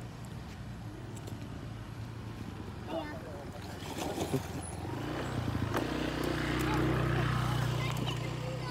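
A child splashing into shallow muddy water about four seconds in, then water sloshing as he wades. From about five seconds a steady engine hum grows louder under the splashing.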